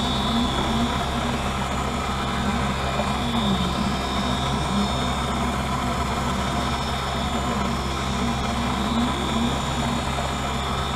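Optical lens edger running steadily, its grinding wheel cutting the bevel onto the edge of a finished bifocal lens. A steady low hum, with a tone that wavers up and down in pitch as the lens turns against the wheel.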